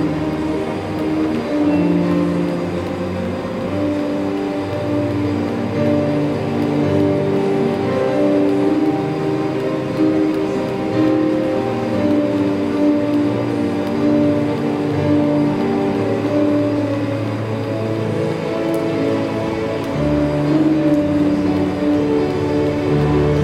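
Electronic keyboard playing slow, sustained chords, each held for a second or two: soft worship music.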